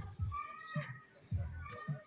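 An animal calling twice, each short high-pitched call about half a second long, over a run of irregular low thuds.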